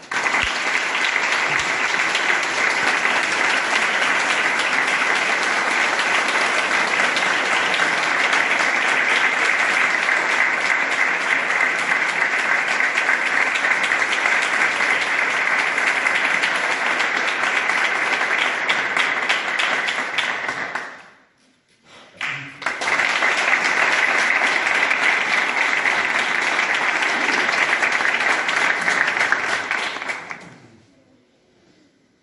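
Audience applauding steadily, with a brief break of about a second partway through before the clapping resumes.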